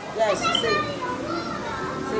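Children's voices, several kids talking over one another, loudest about a quarter to half a second in.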